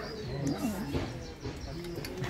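Indistinct voices of people talking, with rising and falling pitch and no clear words.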